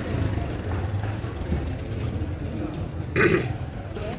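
Steady low hum of street background noise, with one short breathy vocal sound from the interviewee about three seconds in.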